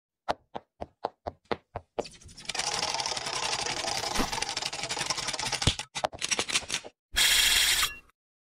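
Sound effects of an animated YouTube-logo intro. Seven quick, evenly spaced knocks come first, about four a second. A long crackling rush of noise follows, then a few stuttering clicks and a short loud burst of static near the end.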